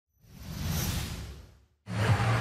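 A whoosh sound effect for an animated intro graphic: it swells up, peaks under a second in, and fades away. After a short gap, music starts abruptly just before the end.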